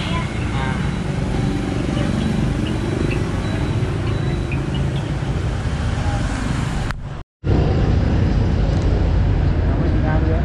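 Busy street ambience: a steady rumble of motorbike and road traffic with faint background voices. The sound drops out briefly about seven seconds in, then returns a little louder.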